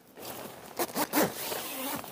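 A zipper being run along its track, a continuous rasp in short strokes, as the iKamper Annex S tent room's zipper is joined to the rooftop tent's zipper.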